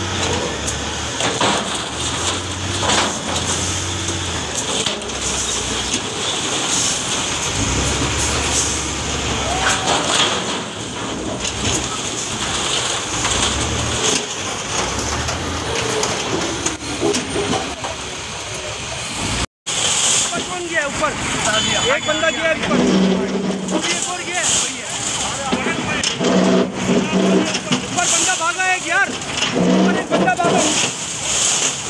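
Heavy diesel demolition machinery running: a wheel loader's engine rumbling and labouring as it pushes into rubble, with debris clattering and voices in the background. After a sudden break about two-thirds through, an excavator is working with shouting voices and repeated steady pitched tones.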